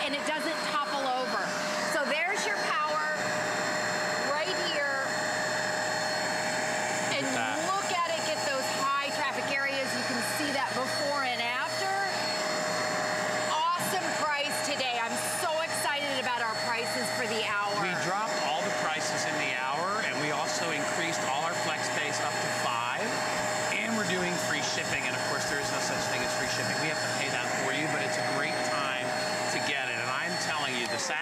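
Hoover Spotless portable carpet spot cleaner running steadily, its motor giving an even whine while the hand tool is worked over carpet. Voices talk over it.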